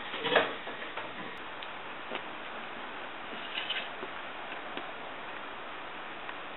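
A single sharp knock near the start, then a few faint scattered ticks over a steady hiss.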